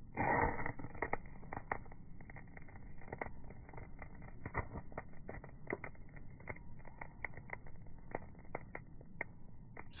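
A zirconia ceramic striker scraped once down a ferro rod, throwing sparks into dried cattail fluff, followed by faint, irregular little crackles as the fluff catches and smoulders.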